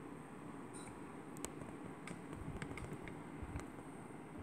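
Quiet indoor room tone with a few faint, brief clicks and taps scattered through it.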